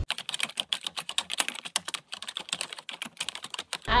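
Keyboard typing sound effect: a rapid run of key clicks, about ten a second, with a brief pause about two seconds in.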